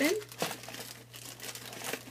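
Cosmetics gift-set packaging being opened by hand, crinkling and tearing irregularly, with one sharp click about half a second in.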